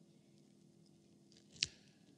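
Quiet room tone with a faint steady hum, broken by one short sharp click about one and a half seconds in.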